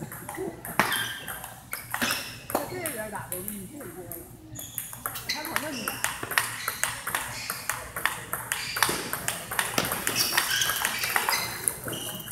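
Table tennis balls clicking sharply and irregularly as they are struck by paddles and bounce on tables during rallies, with voices in the background.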